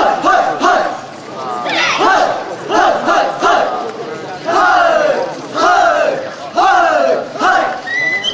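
A group of dancers shouting together in rhythm: a string of short calls from many voices at once, about one or two a second, several sliding down in pitch.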